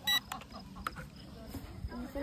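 A single short high electronic beep from a toy drone's remote controller, followed by a couple of faint clicks as its buttons are handled.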